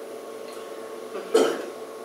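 A man clearing his throat once, a short sharp sound about a second and a half in, over a steady faint hum in the room.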